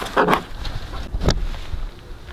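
Wind rumbling on the microphone, with a sharp knock a little past a second in.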